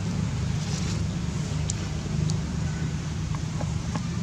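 Steady low outdoor rumble, with a few faint short high chirps.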